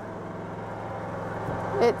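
Generator running with a steady low hum, over a soft hiss of light rain.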